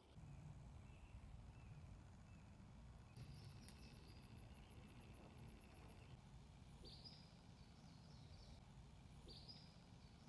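Near silence: faint outdoor field ambience, a low steady rumble with a few faint bird chirps about three, seven and nine seconds in.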